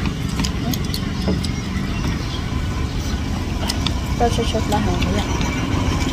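A steady low rumble with scattered light clicks of chopsticks and spoons against ceramic soup bowls, and a few low voices about four seconds in.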